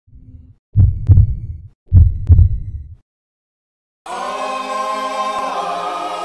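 Heartbeat sound effect: two loud lub-dub double thumps about a second apart, after a faint first beat. After a second of silence, a sustained choir-like music chord begins about four seconds in.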